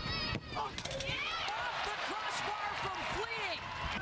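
Soccer match broadcast sound: a commentator's brief "oh", then voices in the background, with a few sharp knocks in the first half-second.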